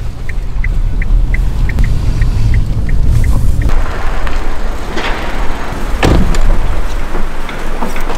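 Cabin of a Kia car while driving: steady engine and road rumble with a turn-signal relay ticking about three times a second. Partway through, this gives way to outdoor street noise with a couple of thuds.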